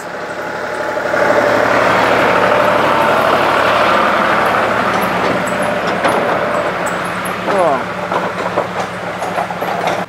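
Diesel engine of a green John Deere farm tractor running as it drives past close by, pulling a wooden trailer; the sound swells over the first second and then holds loud and steady with a low hum.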